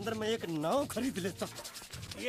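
A shoe brush scrubbing back and forth over a shoe in quick strokes, with a person's wordless voice rising and falling in pitch over it.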